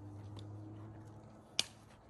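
A single sharp click about one and a half seconds in, over a low steady hum.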